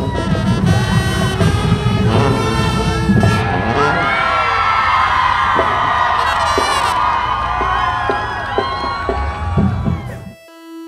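Brass music with a strong beat, then from about four seconds in a large crowd of students cheering and screaming over it.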